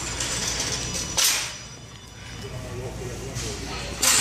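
Steady indoor store background noise with faint, indistinct talk, and one brief loud rustling hiss about a second in.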